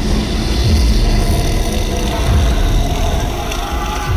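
Dark horror trailer score: a heavy low rumbling drone with three deep bass hits falling in pitch, about a second and a half apart, under faint held higher tones.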